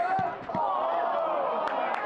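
Mainly a football commentator's voice calling the play, with a single dull thud shortly after the start.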